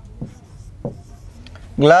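Pen writing on a white board, with two short strokes about a quarter second and just under a second in. A voice starts near the end.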